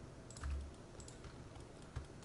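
A few faint clicks from a computer keyboard and mouse, with a low thump about half a second in.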